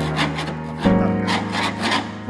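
A flat blade scraping rust and crumbling filler off a corroded car sill, in a quick run of short scraping strokes. Background music plays underneath.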